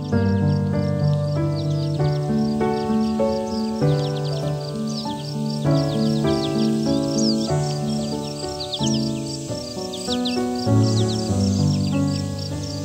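Slow, gentle solo piano music with bird sounds over it: scattered quick down-sweeping chirps and an evenly repeating high chirp that runs on steadily behind the piano.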